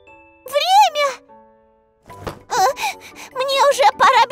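Cartoon soundtrack: a light tinkling jingle of short stepped notes, with a child's high voice rising and falling once about half a second in. From about two seconds in, children's voices exclaim in quick bursts.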